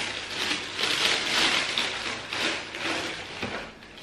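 Gift packaging rustling and crinkling in uneven bursts as a present is unwrapped by hand and a shoe is pulled out.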